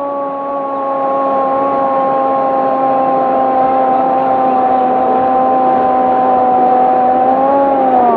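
A single voice holding one long shouted note over the noise of a stadium crowd; the note bends down in pitch as it ends near the end.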